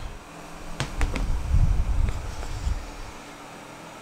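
Handling noise as an egg is lifted out of a plastic incubation tub: a low rumble with a few light clicks about a second in and again near the middle, fading out well before the end.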